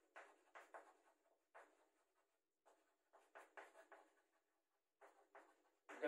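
Chalk scratching on a chalkboard as a line of words is written: faint, short strokes in clusters with brief pauses between words.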